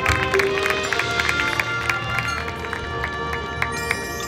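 Marching band playing its field show music, with many quick struck notes ringing over held tones.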